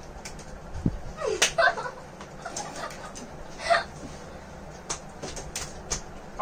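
Scattered crunches and sharp clicks of people chewing a dry, crunchy fried lentil snack, with a dull thump about a second in and a few brief squeaky vocal noises.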